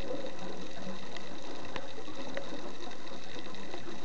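Underwater ambience picked up by a camera in its housing during a dive: a steady hiss with a few faint scattered clicks.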